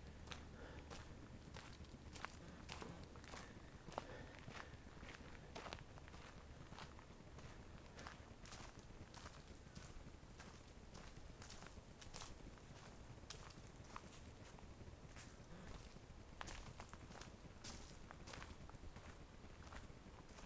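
Faint footsteps of someone walking, an irregular series of light steps and scuffs about once or twice a second.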